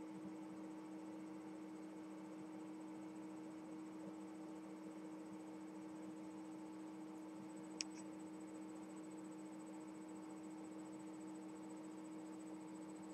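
Faint room tone: a steady low electrical hum with a thin high whine above it, and a single small click about two-thirds of the way through.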